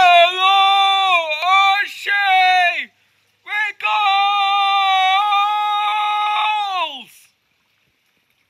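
A young man's loud, wordless vocalising in long held notes: one wavering note for nearly three seconds, a brief break, then a longer steady note that falls in pitch and dies away about seven seconds in.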